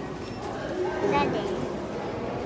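Faint, indistinct voices over the steady background murmur of a busy indoor public space.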